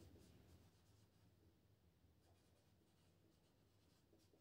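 Near silence, with only faint strokes of a marker writing on a whiteboard.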